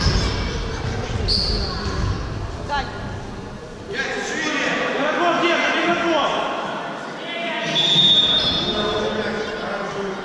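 Futsal play echoing in a large sports hall: the thuds of a futsal ball being kicked and bouncing on the wooden floor, under indistinct shouting from players and onlookers. A short, steady high-pitched squeak comes about eight seconds in.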